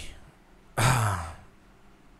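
A man's breathy sigh: one voiced exhale of about half a second, falling in pitch, just under a second in.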